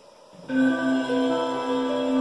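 Slow music with long held notes played through a plate of aluminum driven by an audio exciter as a flat-panel speaker, starting suddenly about half a second in. As a solid panel it tends to ring, which muddies the sound.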